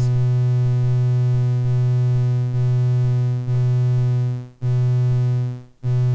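A Lyra-8 synthesizer voice droning on one steady low pitch, gated on and off by an Ornament-8 sequencer loop. From about four seconds in it fades away and comes back in quicker cycles, each cut-off trailing off as the voice decays after the gate ends.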